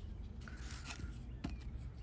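A knife cutting through a foam pool noodle held in a metal guide, heard as a few faint, soft scrapes and ticks.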